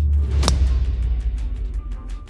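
A golf club striking the ball off the tee: one sharp crack about half a second in. Background music plays under it with a deep bass note held throughout.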